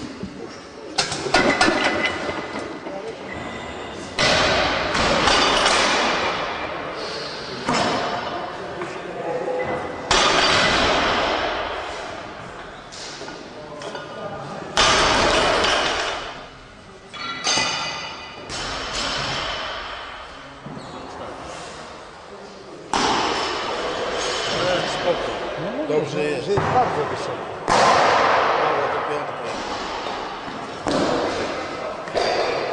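Loud men's voices and shouts in an echoing gym hall, coming in repeated sudden bursts that fade slowly. Thuds and clinks of loaded barbell plates are mixed in.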